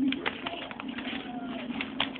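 Scissors cutting paper, with repeated quick snips, over a steady low hum.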